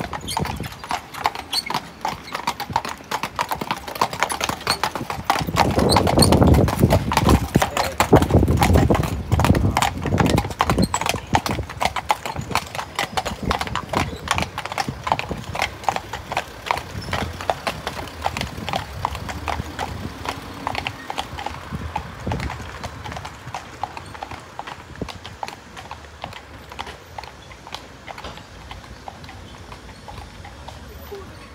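Hooves of the horses pulling a horse-drawn hearse, clip-clopping in a steady walking rhythm on a paved road, with a louder low rumble from about six to ten seconds in. The hoofbeats grow fainter over the second half as the hearse moves away.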